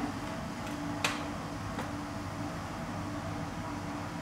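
Room tone in a quiet underground room: a steady low hum, with one short click about a second in and a fainter tick a little later.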